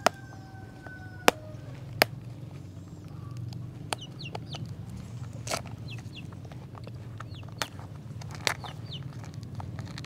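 A rooster's crow tails off in the first second and a half. Chickens cluck faintly after it, with a few sharp clicks scattered through.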